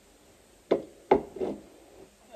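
Three quick knocks of a medicine bottle and other items being set down on a benchtop. The second knock is the loudest.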